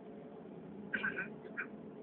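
Steady low rumble inside a moving vehicle, with two short, higher-pitched squeaks, one about a second in and a fainter one soon after.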